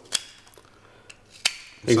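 Light clicks of a carpenter's pencil and a small metal pencil sharpener being handled: two sharp clicks about a second and a half apart, with a faint tick between.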